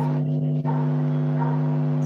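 A steady low hum with no speech, running on without a break.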